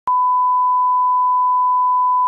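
Steady 1 kHz reference tone of a bars-and-tone slate, one unwavering beep that starts with a small click just after the start.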